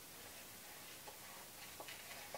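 Faint snips of small scissors cutting through coloring-book paper: a few quiet clicks, one about a second in and a couple near the end.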